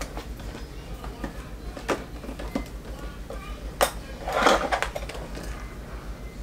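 Small plastic hand-sanitizer bottles knocking and clicking as they are set into the compartments of a plastic makeup case: a handful of separate taps, with a longer rustling scrape about four and a half seconds in.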